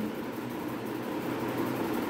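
Steady background hiss of room noise, with a marker writing on a whiteboard.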